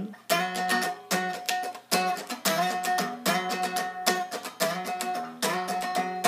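Hollow-body electric guitar strummed in chords, a strum roughly every 0.8 s with the chord ringing between strokes.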